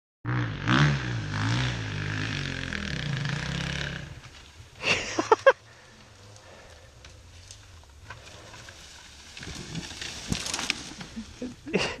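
Dirt bike engine revving hard on a steep hill climb, its pitch rising and falling, then dropping away after about four seconds. A short shout comes about a second later, a few faint knocks and some faint engine sound follow near the end, and a laugh closes it.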